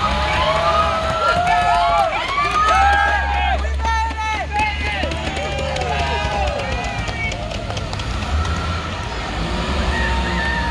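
Young people cheering and whooping from the windows of passing school buses, many overlapping calls, over the steady low rumble of the buses' engines.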